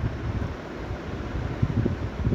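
Low, uneven rumble of air buffeting the microphone, over a steady hiss.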